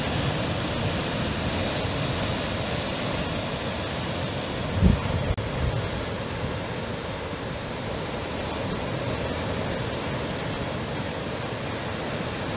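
Ocean surf breaking and washing over rocks, a steady rushing, with wind on the microphone and one brief low thump about five seconds in.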